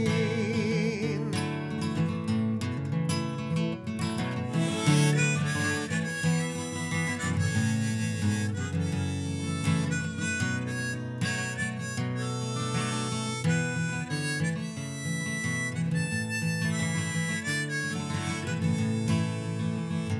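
Harmonica, played in a neck holder, takes an instrumental break over strummed acoustic guitar.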